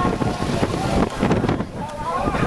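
Wind buffeting the microphone on a sailboat under way, over the rush and splash of choppy water along the hull.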